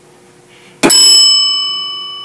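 A single bright bell-like ding from a game-show answer buzzer button, struck about a second in and ringing on with several clear tones that slowly fade: a contestant buzzing in to answer.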